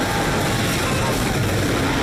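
Film sound effects of a jet of fire blasting over cars and setting them ablaze: a dense, steady roar at an even loudness.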